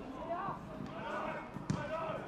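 A single sharp thud of a football being struck, about three-quarters of the way in, over players shouting and calling on the pitch.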